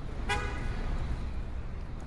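A vehicle horn gives one short toot about a third of a second in, over the low rumble of street traffic.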